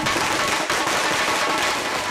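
A string of firecrackers going off in a rapid, continuous crackle.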